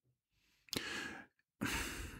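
A man's audible sigh, then a second breath about a second later, just before he speaks again.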